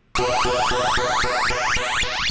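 Short retro arcade-style electronic jingle, a fast run of bright synthesized notes that starts abruptly.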